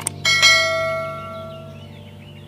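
Sound effect of a subscribe-button animation: a short click, then a single notification-bell ding that rings out and fades over about a second and a half, over soft background music.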